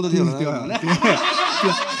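Men talking over one another in conversation, with snickering and chuckling laughter mixed into the speech.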